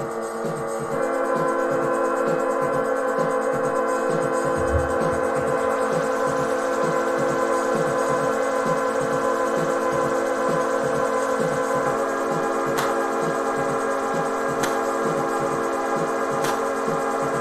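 Experimental electronic music: sustained, layered keyboard drone chords over a low pulse of about two beats a second. The chord swells about a second in and shifts about three-quarters of the way through. A couple of sharp clicks come near the end.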